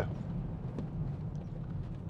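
Steady low hum in the cabin of a stationary BMW X5, with a faint click a little under a second in.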